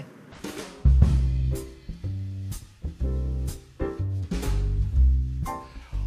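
Jazz quartet music with a drum kit playing snare and cymbal strokes over deep bass notes. It starts about a second in.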